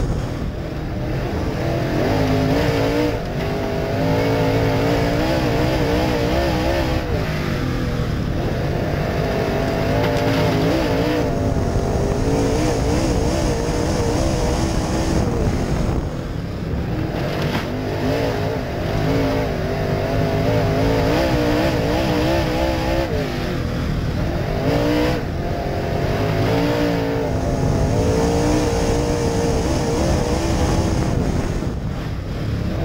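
Open wheel modified dirt race car's engine heard from inside the cockpit at racing speed, its pitch wavering and rising and falling as the driver gets off and back on the throttle, with a dip about every eight seconds for each turn.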